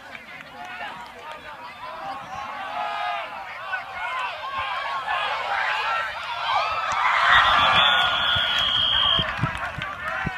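Many spectators and players shouting and cheering during a flag football play, growing louder as the play goes on. A long steady whistle sounds about seven seconds in and lasts about two seconds, a referee's whistle stopping the play.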